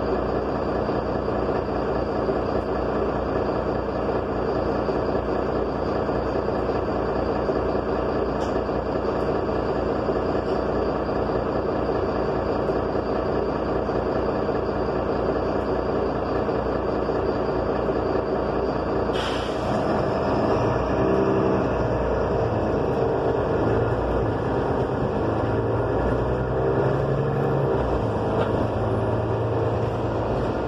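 Inside a city bus: the bus's engine runs with a steady drone, then about two-thirds of the way through a short sharp hiss of compressed air, after which the engine note shifts and climbs as the bus moves off.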